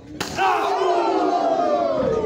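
A sharp smack about a split second in, then the wrestling crowd shouting together in a long, drawn-out yell that slides down in pitch.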